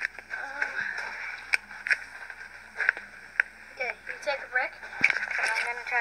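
Indistinct voices in snatches, with several sharp clicks and rubbing noises from a handheld camera being moved about.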